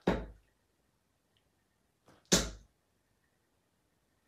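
Two steel-tip darts, Loxley Sheriff 22g, thudding into a Winmau dartboard one after the other: two short sharp impacts about 2.3 seconds apart.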